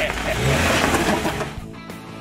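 Jeep Wrangler's engine revving and its tyres working over sandstone rock, loudest for about a second and then fading, with rock music underneath.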